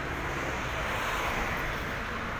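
A small van driving slowly past close by: steady engine and tyre noise that swells a little midway.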